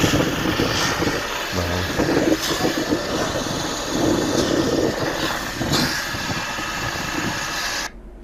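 A vehicle engine running under a steady, loud rushing noise, heard through an outdoor phone video.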